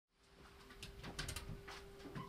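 Faint room sound with a steady low hum, and a few light clicks and knocks around the middle.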